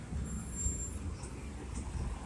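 Road traffic: a small hatchback car driving slowly past at close range, heard as a steady low rumble of engine and tyres.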